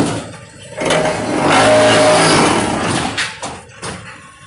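Automatic fly ash brick making machine working through its cycle: a sharp clank at the start, then about a second in a loud, steady mechanical noise for some two seconds that fades away, and another knock near the end.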